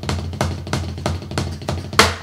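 Drumsticks playing an even stream of strokes on a drum, about six or seven a second, each stroke with the drum's low ring beneath: up-and-down strokes played at speed.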